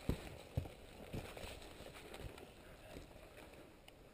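Quiet, with a few soft knocks and rustles, about four in the first two and a half seconds, the loudest right at the start. No engine is heard from the dirt bike, which lies dropped on its side.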